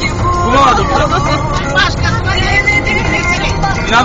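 Music with a voice playing on the car stereo inside a moving van, over the steady low rumble of road and engine noise in the cabin.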